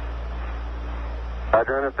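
Steady hiss and low hum of the Apollo 11 air-to-ground radio loop between transmissions. About one and a half seconds in, the lowest hum cuts off as a man's voice comes in over the channel.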